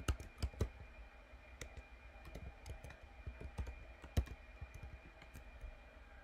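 Computer keyboard being typed on: irregular key clicks as a login email and password are entered, with a few louder strokes near the start and about four seconds in.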